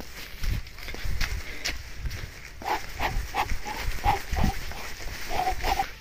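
Footsteps on a dusty dirt path, with a run of short, clipped calls, about three a second, over the second half.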